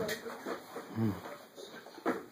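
Quiet, scattered voice sounds with a short, low grunt-like vocal sound about halfway through.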